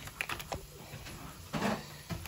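Mussel shells clicking against one another inside a plastic mesh bag as it is handled: a few light clicks, then a short rustle of the bag about one and a half seconds in.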